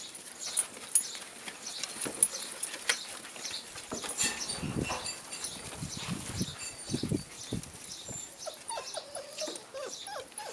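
Puppies playing and wrestling on hay and wooden boards: scuffling and sharp knocks, with short puppy yelps and whimpers near the end.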